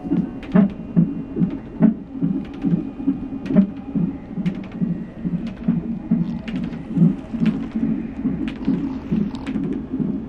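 Fetal heart monitor's Doppler ultrasound playing back a twin fetus's heartbeat during a non-stress test: a steady, rapid whooshing pulse, a little over two beats a second.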